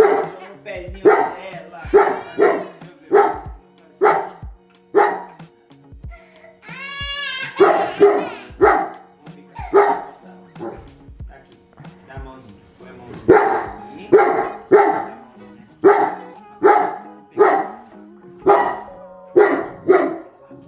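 A Cane Corso barking over and over at a remote-control toy truck, single barks about one or two a second in runs, with short pauses about six and twelve seconds in.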